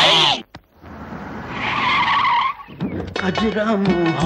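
A man's loud voice for the first half second, then tyres skidding as a vehicle brakes to a stop, growing louder for about two seconds before breaking off. Film music with sliding melodic tones comes in near the end.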